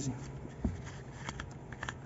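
Plastic gear train of an opened VGT turbo actuator turned by a gloved hand, giving a few faint scattered clicks and rustles. The large plastic gear has missing teeth and slips instead of completing its travel.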